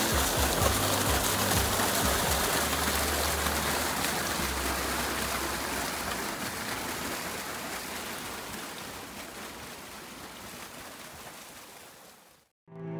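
Water gushing from a large pipe spout and splashing into a pool: a steady rushing noise that slowly fades out toward the end.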